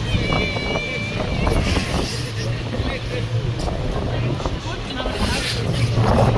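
Busy city street: traffic running past with people talking in the background, and a short high-pitched squeal lasting about a second near the start.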